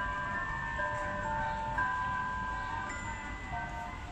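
Slow tinkling melody of chime-like notes from the clock tower's puppet-show music, several held tones ringing over one another and stepping from note to note.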